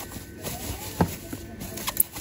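Rustling of a thin white protective wrapping sheet being pulled off a speckled granite-coated cooking pot, with a sharp knock of the pot being handled about a second in and a smaller one near the end.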